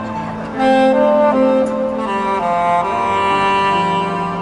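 Saxophone playing a slow melody of held notes over a backing track with strings, the phrase swelling louder about half a second in.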